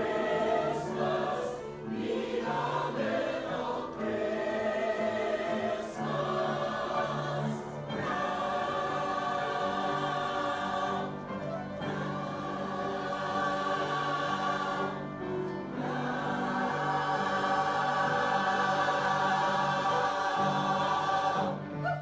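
Mixed SATB choir singing in full harmony, ending on a long held chord over the last several seconds that is cut off shortly before the end.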